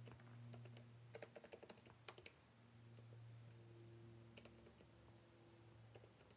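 Faint computer keyboard typing: a quick run of keystrokes about a second in, then a few scattered ones, over a faint steady low hum.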